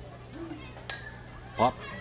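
A softball bat strikes a pitch for a foul ball: one sharp ping with a brief ringing tone about a second in. A commentator's single word follows near the end, over a faint steady low hum.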